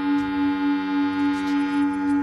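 Electronic drone from a logo sting: one held bell-like tone whose loudness pulses about three times a second, with faint ticks over it.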